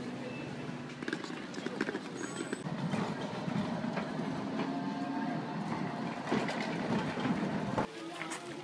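Street tram running along rails: a low steady hum, then a rumble with clattering wheel clicks as it moves past, among people's voices at the stop. The sound cuts off abruptly just before the end.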